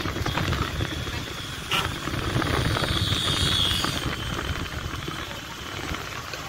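Engine of a moving road vehicle running steadily, with wind and road noise on the microphone; a single sharp click a little under two seconds in.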